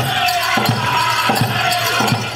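Powwow drum group: high-pitched singing held over a steady drumbeat, about one beat every two-thirds of a second.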